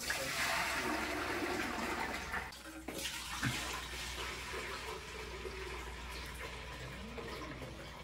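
Milk being poured in a steady splashing stream into aluminium pots. The stream breaks off about two and a half seconds in, and a second, somewhat quieter pour follows from a plastic drum.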